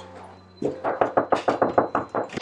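Rapid knocking on a door: a quick run of about ten knocks, starting about half a second in and coming faster toward the end.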